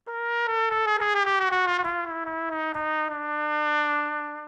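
Mutantrumpet, a three-belled electro-acoustic trumpet, playing one long held note that sinks slowly in pitch, moving by quarter tones with its quarter-tone valve.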